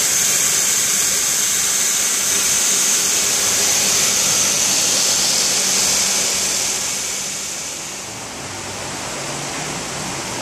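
A driveshaft spinning in a balancing machine, a steady high whir, which fades as the machine spins down between about six and eight seconds in.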